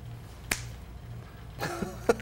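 A single sharp finger snap about half a second in, over quiet room tone; a voice starts near the end.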